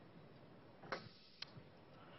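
Two light clicks on a laptop, about half a second apart, about a second in, against near-silent room tone.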